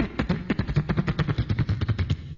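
Beatboxing: a fast, even run of vocal percussion hits, about ten a second.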